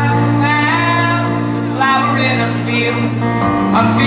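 Live acoustic folk band, with banjo, acoustic guitar, cello and upright bass, playing over steady held low notes while a man sings lead in two phrases, breaking briefly about halfway through.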